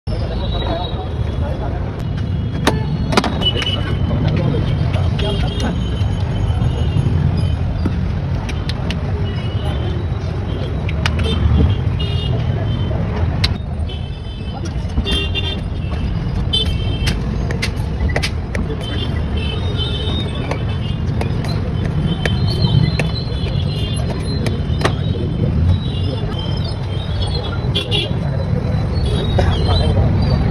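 Busy street noise at a roadside stall: a steady traffic rumble with frequent short vehicle horn toots, background voices and a few sharp clinks.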